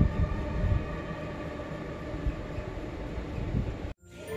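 A movie's soundtrack playing from a TV and picked up in the room: a low, rumbling drone with a few dull low thuds, cut off abruptly near the end.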